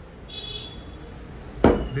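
A meat cleaver chopping raw chicken on a wooden chopping block: one sharp chop about a second and a half in. It follows a short high-pitched beep near the start.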